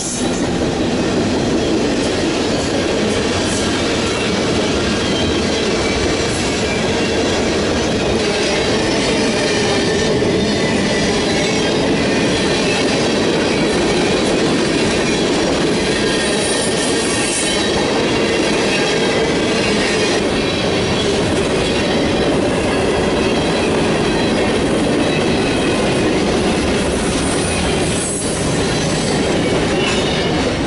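Freight cars of a mixed freight train rolling past at close range, their steel wheels running on the rails in a steady, loud run.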